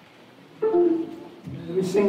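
Church keyboard music: after faint hiss, steady held notes come in about half a second in, step down in pitch, and a fuller sustained chord begins about a second and a half in.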